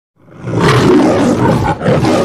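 The Metro-Goldwyn-Mayer logo's lion roar, rising out of silence just after the start and holding loud, with a short dip near the end before the roar goes on.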